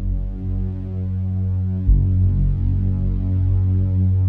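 Background music: a low, sustained synthesizer drone with a deep pulse about two seconds in.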